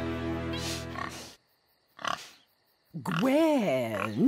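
A held music chord fades out about a second in. The cartoon pig then gives one short snort, and near the end a long, wavering oink.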